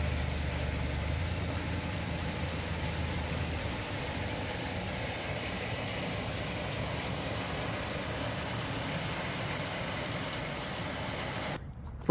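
Battery-recycling line running steadily: a hammer mill with conveyor belts and a cross belt magnet, giving a constant machinery drone. The deep hum eases a few seconds in, and the sound cuts off abruptly just before the end.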